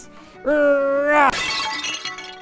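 A long held cry, then about a second in a sudden crash-and-shatter sound effect for stone tablets breaking, fading out quickly, over background music.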